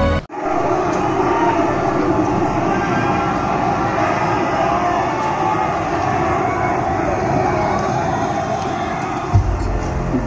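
Opening soundtrack of a light and sound show played over loudspeakers: a steady, dense rumble with music under it, and a low boom near the end.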